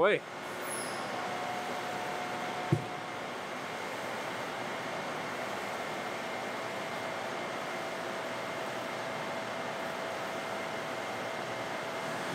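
Steady hiss of running machine-shop equipment, with one short sharp knock nearly three seconds in.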